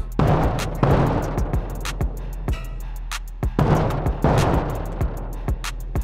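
Giant hand-carved wooden bass drum struck with a mallet: two booms less than a second apart, then two more about three seconds later, each ringing out with long reverberation. Under the hits runs a music track with a steady beat.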